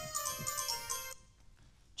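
Electronic music of bright chiming notes stepping downward in a short descending run, over soft low thumps. It stops about a second in.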